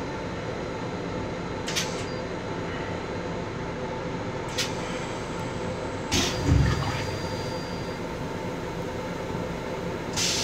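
Steady rumble and hum of a Long Island Rail Road M7 electric railcar running, heard inside its small restroom. A few sharp clicks or rattles come through, and a heavier knock with a low thud about six and a half seconds in.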